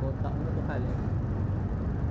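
Scooter engine running with a steady low rumble as the bike rolls slowly. A brief voice is heard in the first second.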